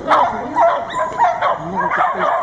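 A small dog yapping over and over in quick, high-pitched yips, with some whining between them.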